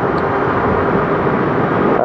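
Motorcycle riding at a steady cruise: the 2006 Yamaha FZ6 Fazer's inline-four engine running evenly under a steady rush of wind and road noise.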